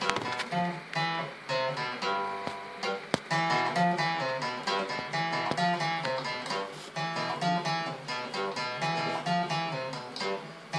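Acoustic guitar played solo, a steady run of picked notes over a recurring bass note. A single sharp click about three seconds in.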